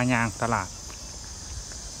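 Steady high-pitched insect chorus, continuous and unchanging, with a man talking over it for the first half second or so.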